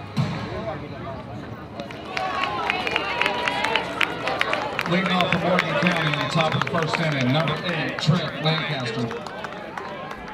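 Indistinct voices calling out at a baseball field between pitches, with one man's voice strongest from about five to nine seconds in.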